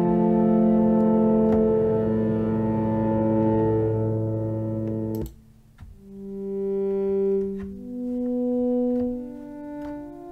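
FXpansion DCAM Synth Squad's Cypher software synthesizer playing pad presets: a sustained, Mellotron-style chord pad ('PD Dusty Mellotron') that cuts off abruptly about five seconds in, then after a short gap a new pad preset ('PD Longboat Drift') with slower notes that swell and fade one after another.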